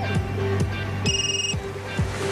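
A telephone ringing once, a short electronic trill about half a second long, about a second in, over background music with a steady beat.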